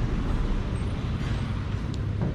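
Steady road traffic noise with a low engine hum, and a short click near the end.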